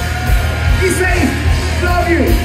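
Hard rock band playing live through a club PA, with heavy bass and drums under electric guitar. A voice yells and wails over it.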